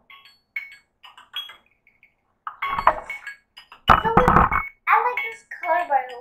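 Slime being squeezed and kneaded by hand, giving short wet squelching pops, loudest about four seconds in, over an indistinct voice.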